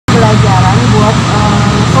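A woman speaking over a loud, steady low background rumble.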